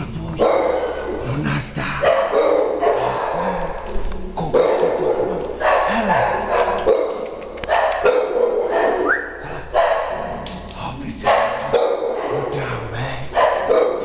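A dog barking repeatedly, about a dozen loud barks at roughly one a second.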